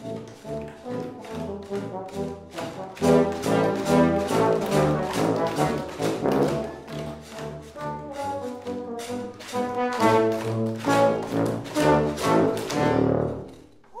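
A trombone and a tuba playing a tune together, the tuba's low notes under the trombone, in many short separate notes; the music stops just before the end.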